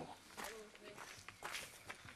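Footsteps: a handful of quiet, irregular steps of people walking, with a faint murmur of a voice about half a second in.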